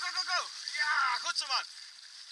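A man's voice giving three short calls of encouragement to a dog pulling a bike, over a faint steady hiss of the ride.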